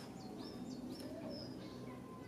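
Faint small-bird chirping: a quick run of about five short, high chirps in the first second and a half, over faint steady outdoor background noise.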